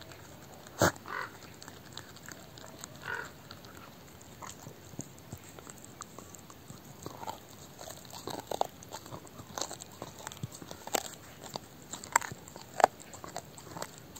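A dog chewing a raw beef brisket rib bone, gnawing and crunching with its teeth, with sharp cracks of bone: a loud one about a second in and two more near the end.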